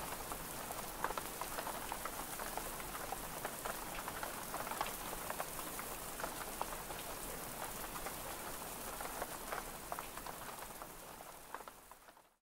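Steady rain falling on foliage, a constant hiss with the scattered ticks of individual drops, fading out in the last second or so.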